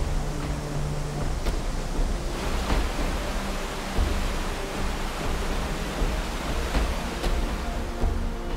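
Steady rush of white water pouring over a waterfall and churning below it, with soft music of held low notes underneath.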